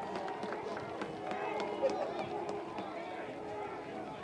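Many voices at once: players and spectators shouting and cheering outdoors after a goal, a steady overlapping hubbub with a few faint sharp knocks.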